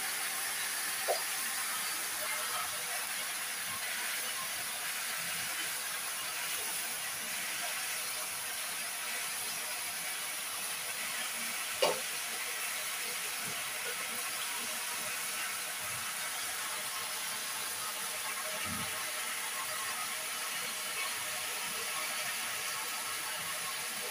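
Steady sizzle of food frying in a pan, with one sharp click about halfway through.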